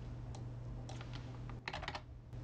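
Computer keyboard typing: a few separate keystrokes, then a quick run of several keys near the end, as numbers are entered. A steady low hum runs underneath.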